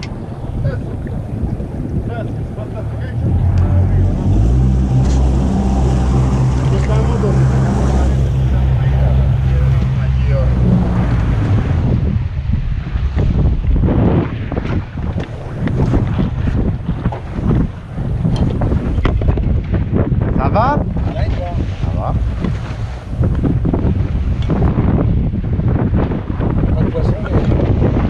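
Boat engine running steadily under throttle, a low drone that starts a few seconds in and stops about eleven seconds in, followed by gusty wind buffeting on the microphone.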